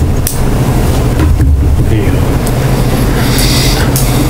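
Steady low hum and rumble of room noise picked up by the meeting microphones, with a brief soft hiss near the end.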